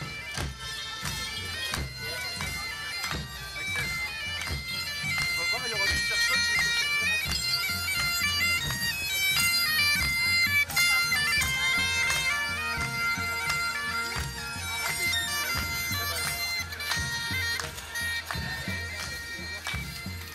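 Bagpipes playing a quick, ornamented melody over a steady drone.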